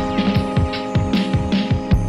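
Boom bap hip-hop beat playing back: held sampled chords over a deep bass, with a busy drum pattern of deep kicks that drop in pitch and crisp hats and snares.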